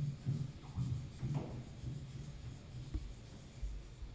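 A cello playing a line of short, low notes, about three a second, growing quieter.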